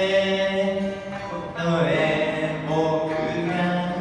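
A woman singing a slow Japanese pop ballad into a microphone, holding long notes, with guitar accompaniment.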